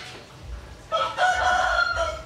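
A loud animal call, held at a steady pitch for about a second, starting about a second in.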